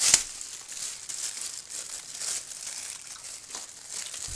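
A sharp knock as a metal table knife is laid down across the rim of a ceramic wax warmer, followed by a quieter, irregular crackling rustle for the rest of the time.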